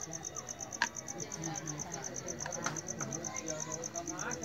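Crickets chirping in a steady, rapid, even pulse, with faint voices in the background and one sharp click a little under a second in.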